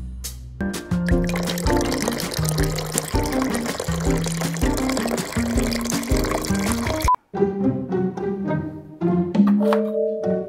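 Background music over espresso machines, a capsule machine and a portafilter machine, pulling shots: a noisy run of espresso pouring into glass cups. The pour noise cuts off suddenly about seven seconds in, leaving only the music.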